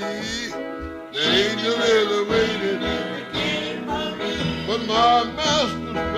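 Fingerpicked acoustic guitar playing a gospel-blues tune, with a man's voice singing long, bending, wordless lines over it at several points.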